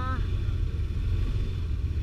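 Snowmobile engine running at low throttle, a steady low rumble heard from the rider's seat.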